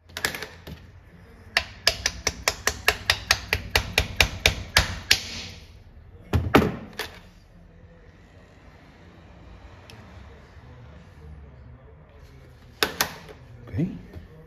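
A hand tool working on the timing gears of a Ducati bevel-drive engine's crankcase: a quick, even run of sharp metallic clicks, about four or five a second for some four seconds. A few single knocks follow, two of them near the end.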